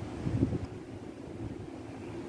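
Low rumble of air and handling noise on a handheld microphone held close to the mouth, swelling briefly about half a second in.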